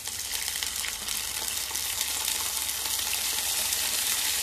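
Water poured into a hot kadai of frying onion, green chilli and curry-leaf tempering, hissing and sizzling loudly and steadily as it hits the hot oil.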